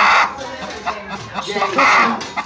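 Hen clucking and squawking while laying an egg, with two loud calls, one at the start and one near the end.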